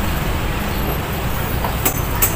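Steady low rumble of street and market background noise, like traffic, with a single sharp click near the end.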